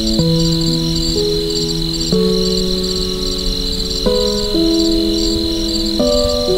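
Crickets chirping in steady, rapidly pulsing trills, mixed over soft, slow music whose held chords change about every two seconds.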